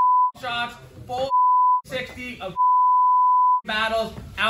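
A man's pre-game speech, cut up by a steady high censor bleep laid over his words three times: briefly at the start, again about a second in, and for about a second near the end, with bursts of his voice in between.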